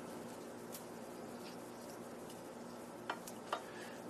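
Scissors snipping through ghost peppers: a faint click early, then two sharper snips about half a second apart near the end, over a low steady hum.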